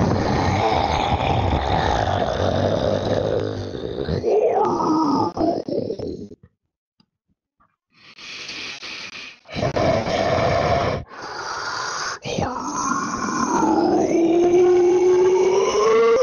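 Tyrannosaurus rex roar sound effects: a long, deep, rough growl that ends in a pitched call swooping down and back up. After a pause of about a second and a half come three short growls and a long roar whose pitch climbs near the end.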